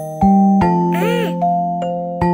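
Music-box tune: bright bell-like notes picked out about two to three a second, each ringing on and fading, with a short rising-and-falling swoop a little after the middle.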